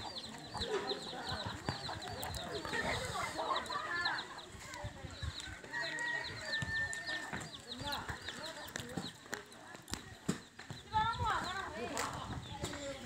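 Domestic chickens clucking in the background, with faint voices and a high, rapid chirping call that repeats over and over.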